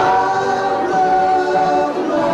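Live rock band on stage, several voices singing held notes together in harmony.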